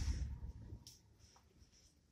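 Fingers rubbing and scraping sand across the glass of a sand-art light table. The rubbing is strongest at the start and fades within about half a second, with a light tick about a second in.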